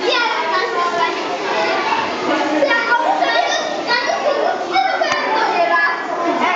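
Many children's voices talking and calling out over one another in a steady chatter, with a single sharp click about five seconds in.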